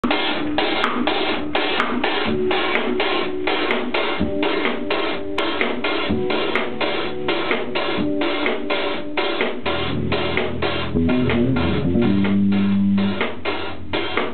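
Five-string electric bass and drum kit playing fast jazz fusion, the drums keeping a quick even beat of about four strokes a second. About ten seconds in, the bass moves to long, held low notes for a few seconds.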